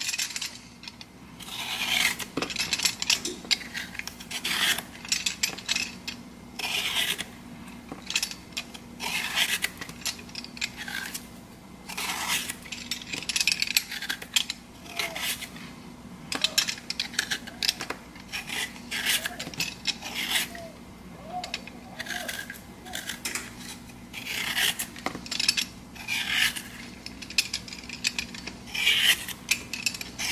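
Vegetable peeler scraping the skin off a cucumber in repeated short strokes, about one to two a second.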